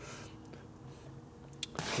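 Quiet room tone with a faint steady hum, and a brief click near the end.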